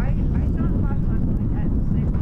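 Wind rumbling steadily on the microphone, with indistinct voices talking faintly in the background.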